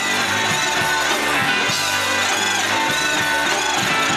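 Live rock band playing electric guitar and drums, with a kazoo buzzing a wavering melody line into the vocal microphone.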